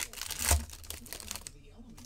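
Plastic wrapper of a hockey card pack crinkling and tearing as it is opened by hand, loudest about half a second in and dying away after about a second and a half.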